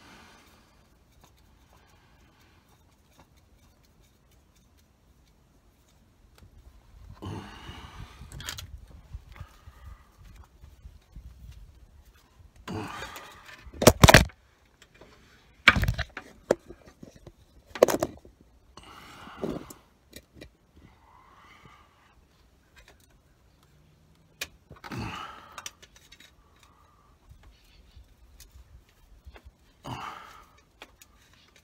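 Intermittent metallic clinks, knocks and scrapes from hands and tools working at the oil filter under a pickup truck. It starts after several quiet seconds, and the loudest, sharpest knocks come near the middle.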